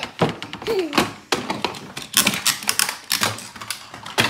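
Plastic toy cars and a toy monster truck clattering and knocking against a wooden tabletop and its rim, in a run of irregular clicks and thunks.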